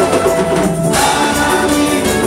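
Live gospel praise music: several voices singing over keyboard accompaniment, loud and continuous.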